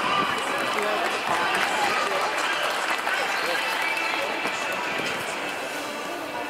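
Steady chatter of many indistinct voices from a stadium crowd, no single speaker standing out.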